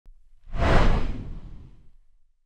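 Whoosh sound effect for an intro logo reveal, a rushing swell with a deep rumble underneath that rises sharply about half a second in and fades away over the next second or so.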